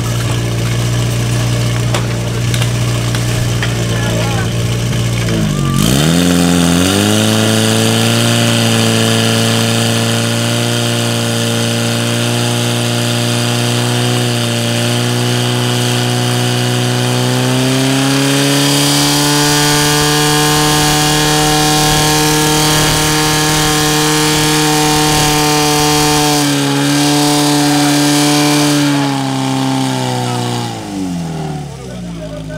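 Portable fire pump's engine idling, then about six seconds in it dips and is revved up to a steady high-speed run, driving water into the attack hoses. Its pitch rises a step a little past halfway and drops back at the very end.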